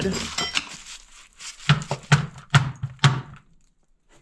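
Scrap junk rattling and shuffling as a hatchet is pulled from the pile, then four dull knocks about half a second apart as the mud-covered hatchet is struck against something to knock the mud off.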